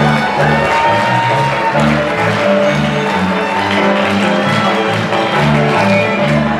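Live folk dance music from a band, loud and continuous, with a bass line stepping through short notes beneath the melody.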